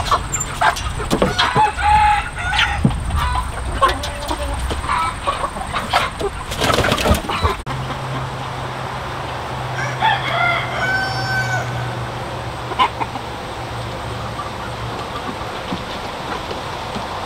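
A flock of Hmong black-meat chickens clucking, with short pecking and scratching clicks. A rooster crows once, about ten seconds in, over a steady low hum.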